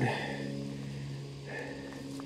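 Soft footsteps on a leaf-covered gravel road, a few faint crunches, over a faint steady low hum.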